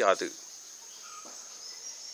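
Insects droning steadily at a high pitch in the surrounding vegetation, a continuous background chirring.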